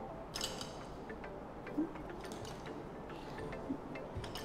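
Faint background music under quiet room noise, with a brief light clink about half a second in and a few soft clicks of handling.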